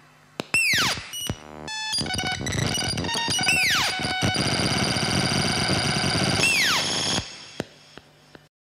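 Patched Ciat-Lonbarde and modular synthesizer noise: three falling pitch sweeps, about half a second, three and a half and six and a half seconds in, over a dense, noisy texture of steady tones. The texture cuts off abruptly about seven seconds in, leaving a faint residue and a couple of clicks.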